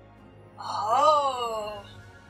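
A woman's drawn-out wordless moan, like a sympathetic 'ohhh', rising in pitch and then falling away over about a second and a half, over soft background music.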